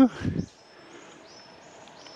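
Faint, high, thin bird calls: a few short held whistled notes, each rising slightly at its start, over a quiet forest background.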